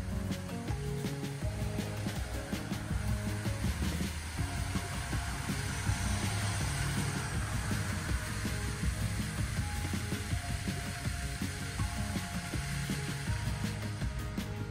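Background music with a low, steady bass line, overlaid in the middle by a rushing hiss that swells and then fades.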